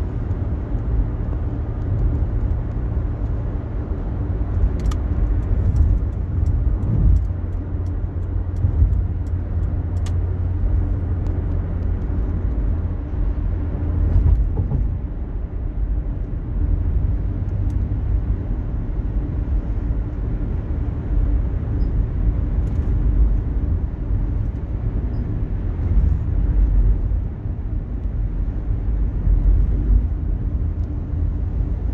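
Steady low rumble of road and tyre noise heard inside a car cruising on a freeway, with a couple of faint clicks.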